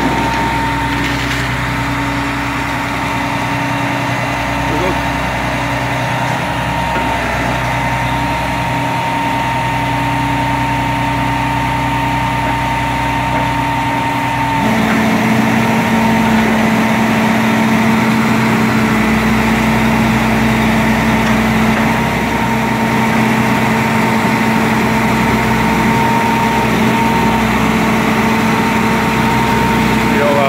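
Grapple trucks' engines running steadily to power their hydraulic booms, a constant hum with a steady whine. The pitch steps down suddenly about halfway through and then holds steady.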